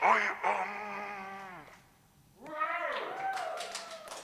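A man's voice sustaining a long held note into a microphone, which fades away. After a short pause comes a second drawn-out vocal call that slides up and down in pitch, with no instruments playing.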